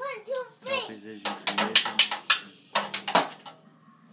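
A young child's voice calls out briefly, then a child's toy drum kit is struck with sticks, a quick, uneven flurry of a dozen or so hits lasting about two seconds.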